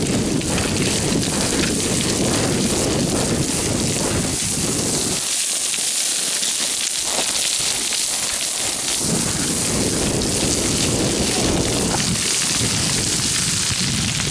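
Boots crunching and sliding down loose limestone scree in a steady, grainy rush, with wind buffeting the microphone; the low rumble drops away for a few seconds about a third of the way through.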